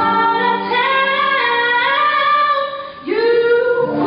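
A female solo voice singing long held notes, with other voices holding sustained harmony beneath it; a new phrase starts about three seconds in.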